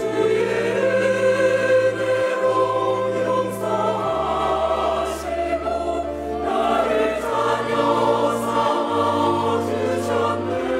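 Mixed church choir singing a Korean worship song in parts, over an accompaniment of sustained bass notes that change every second or two.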